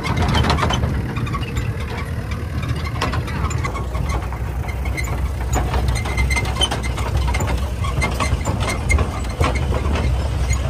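Open safari jeep's engine running with a steady low rumble, its body and fittings rattling and knocking in frequent short clicks.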